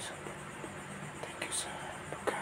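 A man whispering a quiet prayer, with a few soft sharp sibilant sounds about one and a half seconds in, over a faint steady low hum.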